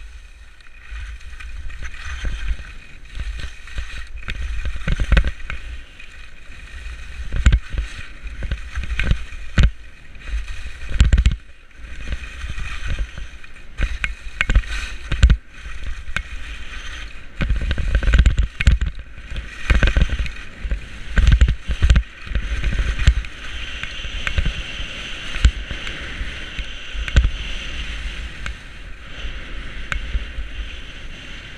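Skis sliding and scraping over packed snow on a downhill run, with wind buffeting the microphone in uneven gusts.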